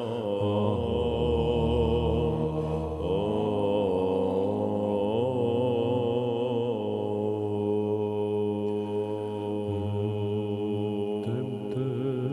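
Byzantine chant: a voice singing a slow, wavering melodic line over a steady held drone (the ison), without a break.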